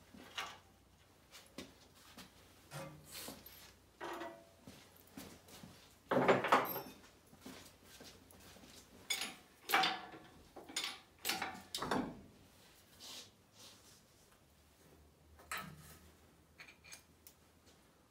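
Irregular metal clunks and rattles from an engine hoist's chain and a diesel engine being worked loose from its mounts and bell housing. The loudest clatter comes about six seconds in, with more knocks around ten and twelve seconds.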